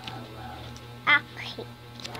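A brief high-pitched, wavering squeal about a second in, over a steady low hum.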